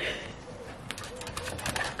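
A pigeon cooing faintly in the background, with a few light clicks in the second half.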